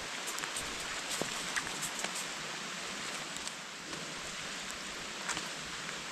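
Steady rain falling, an even hiss with no pauses, with a few faint short clicks.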